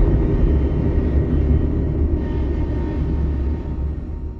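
Deep, steady cinematic rumble in a film trailer's closing sound design, slowly dying away, with faint sustained tones over it.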